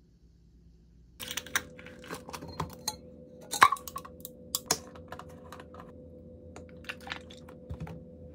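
Light clicks and knocks of cups, containers and a bottle being picked up, moved and set down on a hard kitchen countertop. They start about a second in and come at irregular intervals, with the sharpest knock about three and a half seconds in.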